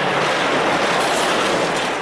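Semi-trailer livestock truck passing close by, a loud steady rush of engine and tyre noise that eases off near the end.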